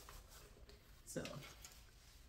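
Near-quiet room with a few faint light clicks and taps from the plastic hydroponic growing unit being handled.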